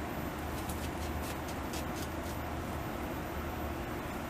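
Beaver gnawing at the trunk of a narrow tree, an irregular run of short sharp clicks several times a second, over a steady low background rumble.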